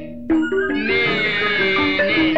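Burmese classical music from a hsaing waing ensemble. A brief lull at the very start gives way to stepped notes from tuned drums and gongs under a wavering high melodic line.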